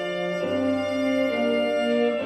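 Symphony orchestra playing a slow passage: the strings sustain held chords while a melody moves in steps from note to note. A low bass note comes in about half a second in.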